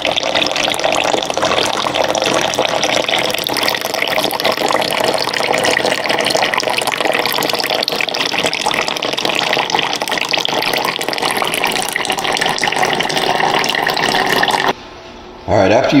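Water pouring in a steady stream from a countertop reverse-osmosis water dispenser's spout into a container, as the system runs its flush. The sound cuts off abruptly near the end.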